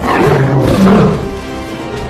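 A loud animal roar starts suddenly and lasts about a second before easing off, over film music.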